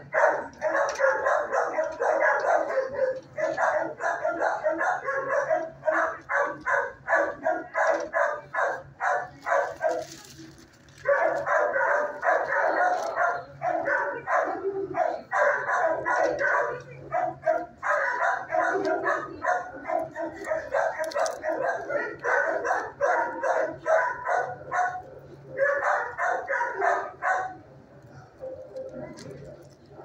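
Dogs barking in a shelter kennel block, fast overlapping barks several times a second, with a brief lull about ten seconds in and another near the end.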